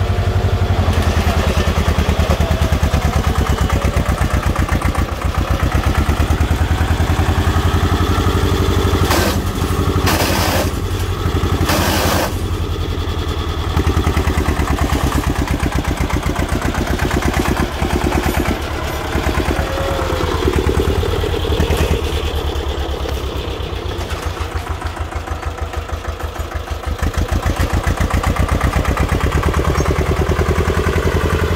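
Vintage tractor's diesel engine working hard under load as the tractor churns through deep mud, with a fast, even firing beat. Three short hissing bursts come a little past a third of the way in, and the engine eases off for a few seconds before picking up again near the end.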